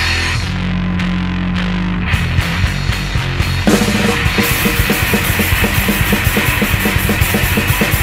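Hardcore punk band playing an instrumental stretch with no vocals. A low, bass-heavy riff with hardly any cymbal comes first; cymbals come in about two seconds in, and the full band with fast drums hits harder from near four seconds in.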